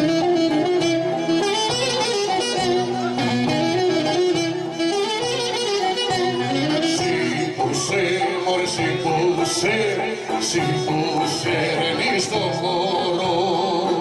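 Live Greek folk music for the kagkelari circle dance: a violin carries a continuous winding melody, with singing.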